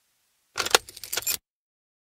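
A short, fast rattle of clicks lasting just under a second, starting about half a second in and stopping abruptly.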